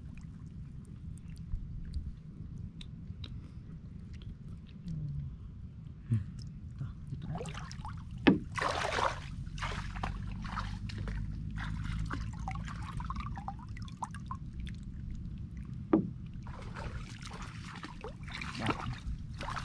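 Water sloshing and splashing as a woven bamboo fishing basket is handled and dipped in shallow floodwater, with a few sudden louder splashes, the loudest about eight seconds in.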